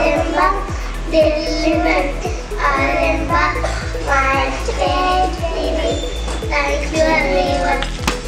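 A group of young children singing a rhyme together into microphones, with a regular ticking beat running underneath.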